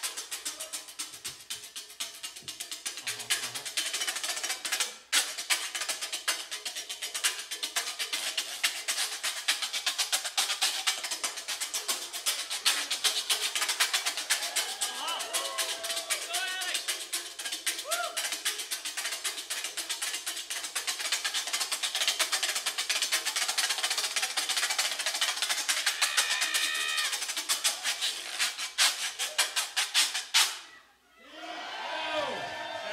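Frottoir (corrugated metal rubboard vest) played in a solo, scraped and tapped rapidly with hand-held beaters: a dense, fast, steady stream of metallic clicks and rattles.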